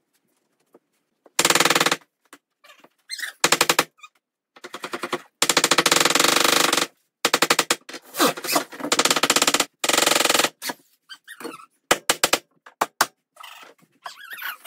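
Cordless impact driver driving screws into the plywood riser deck in several short bursts of fast hammering clicks, the longest about a second and a half long near the middle.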